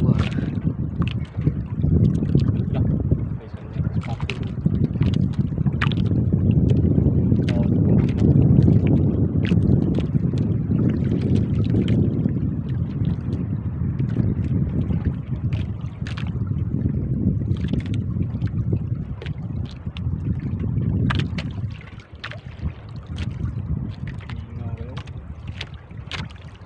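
Wind rumbling on the microphone aboard a small outrigger boat at sea, with water slapping against the hull in short, sharp splashes throughout.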